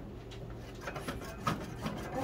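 A few light clicks and knocks at a kitchen sink, the sharpest about one and a half seconds in and just before the end, mixed with brief breathy laughter.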